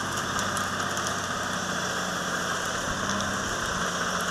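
Heavy earthmoving machine's diesel engine idling, a steady mechanical noise with a low hum that holds level throughout.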